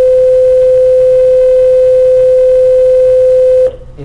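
A loud, steady electronic tone held at one pitch, cutting off suddenly near the end.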